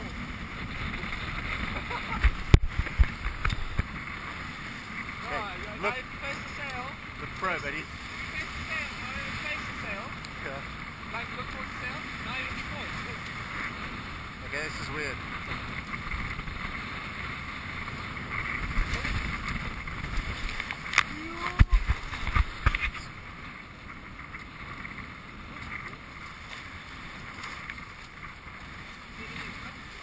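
Water rushing along the hull of a Hobie sailboat under sail, with wind buffeting the microphone. There are two louder stretches of gusts and thumps, about two seconds in and again around twenty seconds in.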